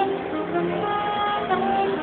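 Live smooth-jazz band music: saxophone playing a melody of held notes over keyboard accompaniment.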